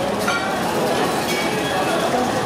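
Dining-room hubbub: a steady din of overlapping distant chatter with occasional clinks of glassware and cutlery.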